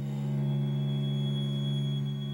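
String quartet of two violins, viola and cello holding a sustained chord on a steady low note. A thin, high held tone comes in under a second in.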